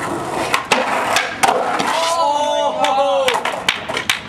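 Skateboard wheels rolling on concrete, with a few sharp clacks of the board in the first second and a half.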